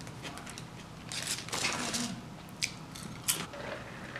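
Close-up chewing of a mouthful of veggie sub, with wet mouth sounds and irregular crunchy clicks that grow louder in the middle. There are a couple of sharp clicks near the end.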